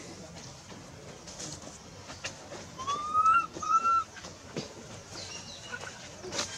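Infant long-tailed macaque giving two short, high calls about three seconds in, the first rising in pitch and the second held level, over faint scattered clicks.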